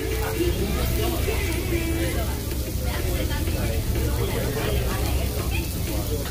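Indistinct background chatter over a steady low hum, with a brief steady tone at the very start.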